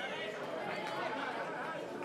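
Indistinct chatter of several overlapping voices in a busy hall.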